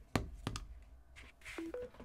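A few light knocks as a Samsung Galaxy Z Flip 4 in a clear case is set down on a wireless charging pad. Near the end a short two-note chime follows, low then higher: the phone signalling that wireless charging has started.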